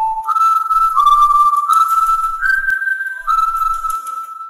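A short whistled tune: a single clear tone holding a handful of notes that step up and down in pitch.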